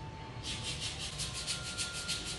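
A thin metal nail tool scraping and filing a toenail during a pedicure, in quick back-and-forth strokes. A dry scratchy hiss that starts about half a second in and repeats about six or seven times a second.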